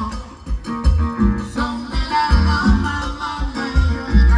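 A live band playing Latin dance music, with a strong, repeating bass beat.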